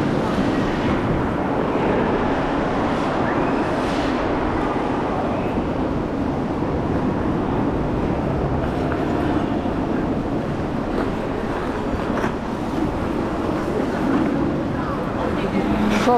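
Ice skates gliding and scraping on a rink's ice, a steady rushing noise with a few sharper scrapes of the blades, over the murmur of other skaters' voices in the rink.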